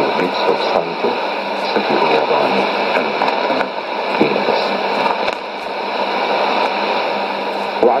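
An Arabic-language news broadcast from Radio Sultanate of Oman, received as a weak shortwave AM signal on 15140 kHz through a Sony ICF-2001D receiver. The announcer's voice is faint and broken under steady hiss and static, dipping slightly about five seconds in, and comes through more clearly right at the end.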